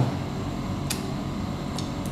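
A single sharp crack about a second in as cooked crab shell is broken apart by hand, over a steady background hum.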